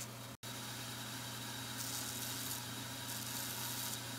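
Bench belt sander's electric motor running with a steady low hum and hiss while the cut end of a pedal stem is smoothed against the belt. The sound drops out completely for a moment about half a second in.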